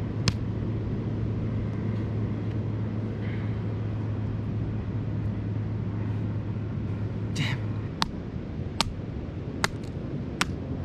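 A wooden stick striking the shell of a cooked mud crab to crack it open: a single sharp knock just after the start, a rougher crack about seven and a half seconds in, then a run of sharp knocks under a second apart near the end, over steady background noise with a low hum.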